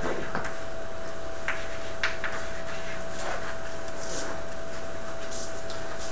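Chalk writing on a blackboard: a few short scratching strokes and taps, over steady room noise with a constant faint hum.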